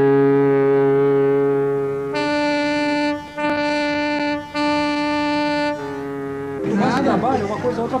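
Ship's horns sounding long, steady blasts. A deep horn sounds for about two seconds, then a higher-pitched horn gives three blasts with short breaks between them, and the deep horn comes back briefly. About six and a half seconds in, a busy room of many overlapping voices takes over.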